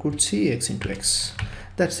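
Computer keyboard typing: a few quick keystrokes, mixed with short bits of a man's speech.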